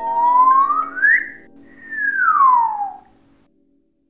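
Cartoon sound effect: a whistle-like tone slides up in pitch for about a second, breaks off, then slides back down over the next second and a half, like a slide whistle. It fades out about three and a half seconds in.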